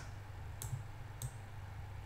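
Two short clicks about half a second apart, from a computer mouse being pressed and released while text is selected on screen, over the low steady hum of a computer fan.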